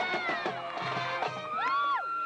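High school marching band playing its field show, a wind melody whose notes slide up and fall away in arching swells over the rest of the band.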